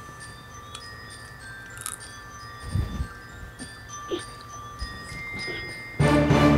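Chime-like tinkling with scattered held bell tones, a title-card music sting, with a low thud about three seconds in.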